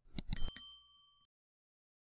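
Subscribe-button sound effect: two quick clicks, then a single bright bell ding that rings for under a second and fades away.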